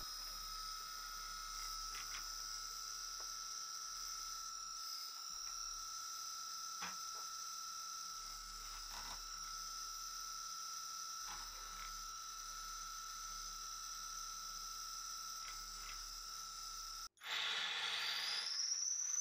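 Brushless motor spinning a 3D-printed gyroscope flywheel at full speed: a faint, steady high whine in two pitches, with a few faint clicks. It breaks off abruptly near the end, and a similar whine with more hiss follows.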